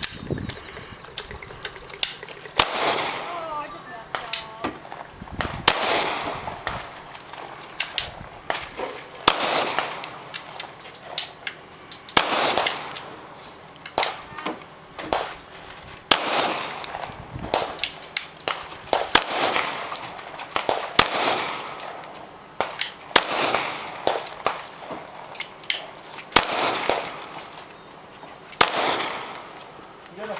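Pistol shots fired one-handed through a stage of a shooting match: single sharp reports at an uneven pace, often a second or more apart, some followed by a short ringing echo.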